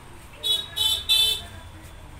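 A horn tooting three short, high-pitched times in quick succession, over a low steady background hum.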